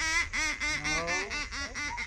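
German shorthaired pointer yelping in a rapid string of short, high cries, each rising and falling in pitch, about four a second: excited vocalizing while restrained at the shore.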